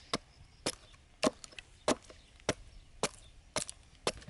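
Antique Kellokoski axe with a piece of wood wedged on its blade, knocked down onto a wooden chopping block to split it into kindling. Seven sharp wooden knocks come about every half second, the loudest in the middle.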